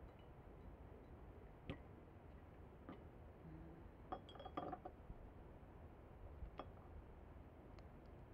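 Faint, sparse clinks and taps of glass jars being handled, a few single ones and a short cluster of clinks with some ringing about four to five seconds in.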